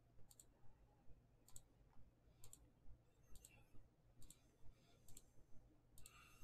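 Computer mouse button clicked over and over, about once a second. Each click is a faint, short press-and-release pair.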